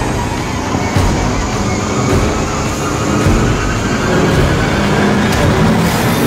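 Loud, dense low rumble of trailer sound design, with sharp hits about a second in and just past three seconds, and a faint tone slowly rising in the second half.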